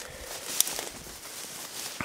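Faint rustling of a person moving through tall grass, with a single brief click about half a second in.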